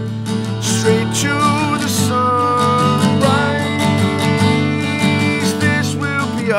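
Acoustic guitar strumming chords in an instrumental passage between sung lines, with a held melody line over the chords.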